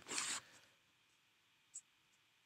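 A short breathy exhale just after speaking, then a single faint click near the end; otherwise near silence.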